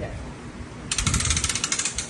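Ratchet of a calf puller clicking, a fast run of metal clicks lasting about a second from about halfway in, as the handle is worked to take up tension on the ropes drawing the calf.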